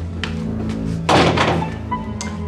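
A door pushed shut, one heavy thunk about a second in, over steady background music.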